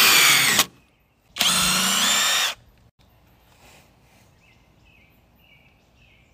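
Kobalt 24-volt brushless cordless driver driving a screw into a wooden board in two bursts of about a second each, with a short pause between. After the second burst only faint outdoor background remains.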